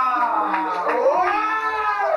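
A person's voice in drawn-out calls that slide in pitch, dipping about a second in and rising again.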